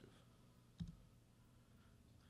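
Near silence: room tone, with one short click a little under a second in.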